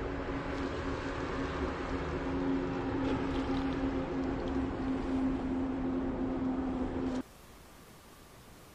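A motor running steadily with a constant hum over a noisy rush; it stops abruptly about seven seconds in.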